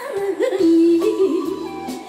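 A woman singing a trot song over backing music. About half a second in she settles into a long held note, which begins to waver toward the end.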